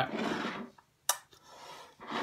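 Handling noise as a dip tin and a plastic spit mug are picked up: a soft rubbing hiss, one sharp click about a second in, then a fainter rub.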